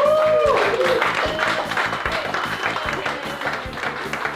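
A small group applauding, with a voice whooping near the start, over background music.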